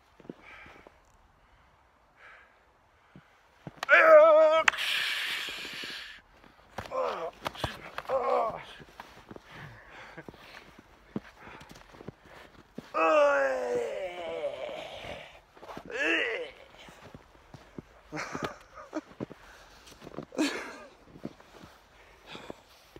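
Two men yelling and grunting as they spar with wooden sticks, with sharp clacks scattered between the cries, a long drawn-out yell about two-thirds of the way in, and laughter near the end.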